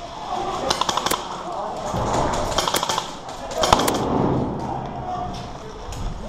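Airsoft rifle firing short quick bursts of sharp clicking shots: a burst about a second in, another near three seconds, and a single sharp shot near four seconds.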